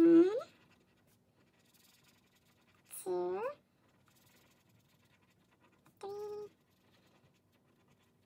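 A woman making three short hummed "mm-hmm" sounds about three seconds apart, the first rising in pitch and the loudest. Between them a marker scratches faintly on paper as she colours in letters on a chart.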